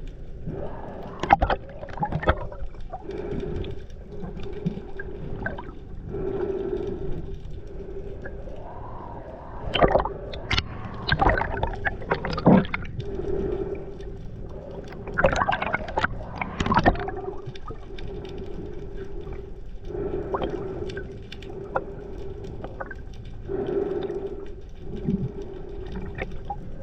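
Underwater sound picked up through a camera housing: a steady low hum that swells and fades every few seconds, with scattered knocks and splashy, bubbly bursts of water noise, the loudest about ten seconds in and again around fifteen to seventeen seconds.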